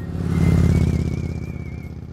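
Motorcycle engine, swelling to a loud peak about half a second in and then fading away.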